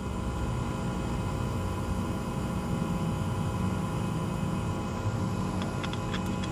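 Steady background machine hum with several steady tones in it, and a few faint clicks near the end.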